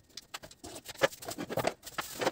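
Footsteps on a tiled floor: a few irregular soft knocks and scuffs, the strongest about a second in.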